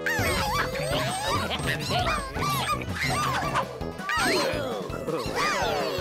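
Cartoon background music with the high, squeaky wordless chatter of several cartoon characters, many short calls sliding up and down in pitch and overlapping.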